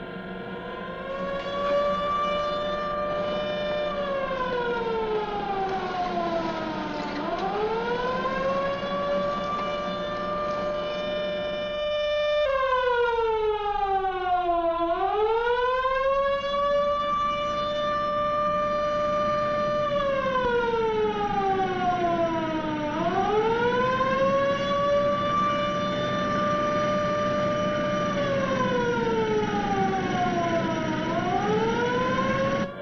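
Launch-site warning siren wailing in slow cycles: each time it rises, holds a steady pitch for a few seconds, then glides down, repeating about every eight seconds. It gets louder about twelve seconds in. It is the alarm for clearing the launch area before lift-off.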